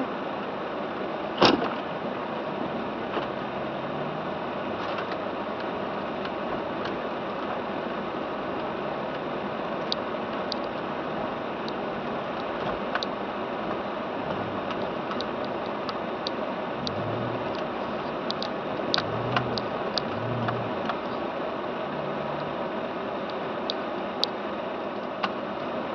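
Steady car cabin noise as a car moves slowly over snow: an even hiss with faint low hums coming and going and scattered small clicks and crackles, most of them in the second half. One sharp click about a second and a half in.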